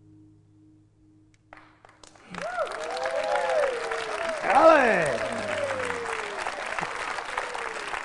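The last chord of a flamenco guitar piece rings and fades away; a little over two seconds in, an audience bursts into applause, with cheering and shouting voices over the clapping, loudest near the middle.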